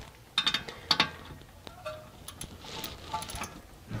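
Scattered light metal clicks and ticks of hand work on a brake hose fitting and caliper, in small clusters: just after the start, about a second in, and several more in the second half, over a faint steady hum.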